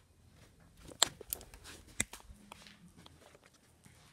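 Quiet handling noise: a few light, sharp clicks and taps, the clearest about one second and two seconds in, as the phone and a small plastic toy are moved about.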